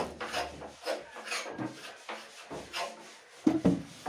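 Wooden teak chairs scraping and rubbing against each other as one is worked out of a tightly packed stack, in a series of short scrapes, then a few sharper wooden knocks near the end as it is set down.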